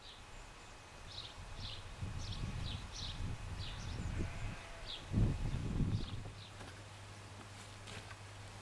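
Wind buffeting the microphone in gusts, loudest about five seconds in, with small birds chirping repeatedly in the background.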